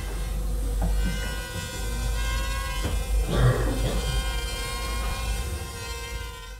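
Crazyflie nano quadcopter's motors and propellers buzzing in flight: a steady high whine made of several close, unchanging tones, with a brief rustle about three seconds in.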